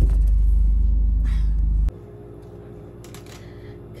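Steady low rumble of a car interior, with the engine running. It cuts off abruptly about two seconds in and gives way to a much quieter room with a faint steady hum.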